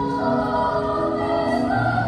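Girls' choir singing in parts, holding sustained notes. A low steady note comes in near the end.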